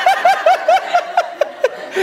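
Laughter: a high-pitched run of short laugh pulses, about five a second, trailing off near the end.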